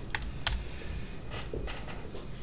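About four light, scattered keystrokes on a computer keyboard.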